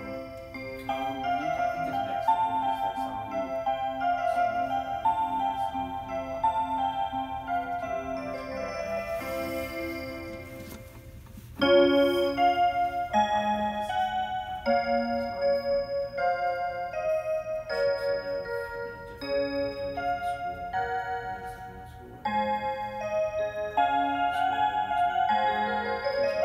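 Seiko melody mantel clock playing its built-in chime melodies, a steady run of clear bell-like notes. A new tune starts with a sudden jump in loudness about 12 seconds in, and again about 22 seconds in.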